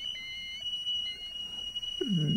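A steady, high-pitched electronic tone that comes in sharply and holds one pitch, like a beep held long. Beneath it a fainter wavering whistle-like tone breaks off partway through.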